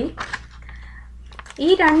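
A lecturing voice with about a second's pause, in which a few short clicks are heard over a low steady hum; speech resumes near the end.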